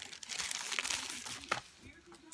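Clear plastic baggie crinkling as it is handled and opened by hand, with one sharp click about one and a half seconds in.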